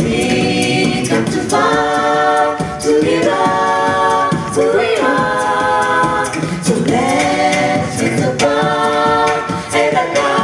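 A show choir singing a cappella into microphones: sustained chords in close harmony that change every second or two, over a steady beat of vocal percussion.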